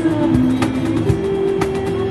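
Live band music: a guitar with a cajón slapped by hand, its strikes keeping a steady beat under held notes.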